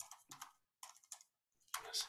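Typing on a computer keyboard: a faint, irregular run of keystroke clicks, bunching up into a quicker burst near the end.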